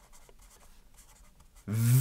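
Felt-tip marker writing a word on paper: a run of faint, short scratchy strokes.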